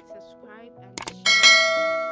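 A mouse-click sound effect followed by a bright, bell-like notification ding. The ding comes about a second and a quarter in and rings on, fading slowly, over background music.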